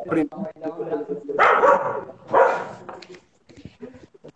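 Voices on a video call, broken by two loud, harsh bursts about a second apart near the middle.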